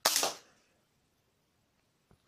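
A homemade LEGO brick-shooting submachine gun firing: a loud, sudden clatter of plastic parts, several sharp snaps in quick succession, dying away within about half a second.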